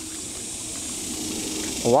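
Flowing creek water, a steady hiss of rushing water.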